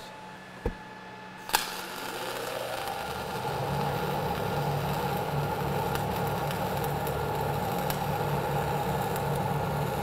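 Dual shield flux-core welding arc (ESAB 7100 wire under C25 gas) running a fill pass on vertical plate, at a raised 26.5 volts and 480 wire feed speed: a sharp click about a second and a half in, then a steady sizzle and crackle that builds a little over the next two seconds and holds.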